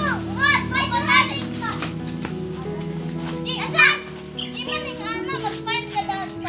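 Children playing, with short high-pitched shouts and cries, over background music of steady held notes.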